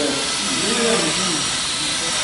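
Power drill boring a hole into a hardwood log to take mushroom spawn plugs: a steady, loud hissing drilling noise.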